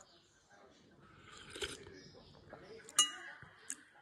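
A metal spoon clinking against a ceramic plate: one sharp, ringing clink about three seconds in and a lighter tap just after, with soft scraping of the spoon in the dish before.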